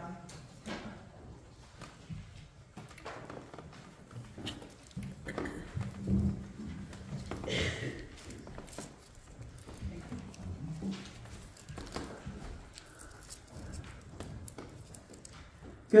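Scattered light knocks, rustling and shuffling from people moving about and a handheld microphone being handled and passed, with faint low voices in the room.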